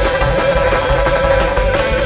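A band playing live on acoustic guitar, upright bass and drums, with one pitched note held steady through, bent up into just before and bent down out of just after.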